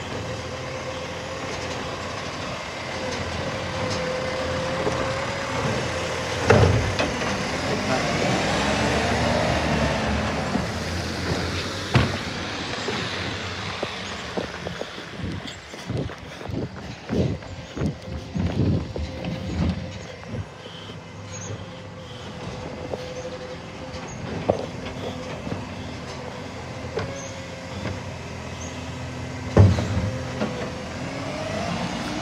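Side-loading garbage truck working a kerbside bin round, its engine and hydraulics running with a steady whine, a sweeping rise and fall of sound partway through, and a scatter of thumps and knocks.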